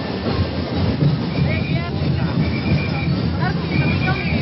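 Street-festival percussion drumming in a steady rhythm, mixed with a crowd's voices and shouts. The sound is loud and dense throughout.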